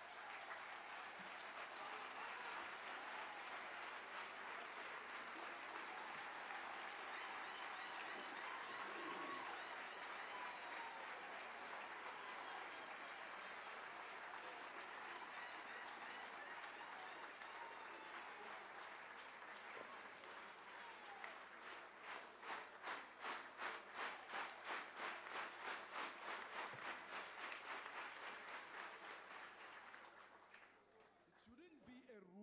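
A large crowd of people applauding. About two-thirds of the way in, the clapping falls into a steady unison rhythm of roughly two claps a second.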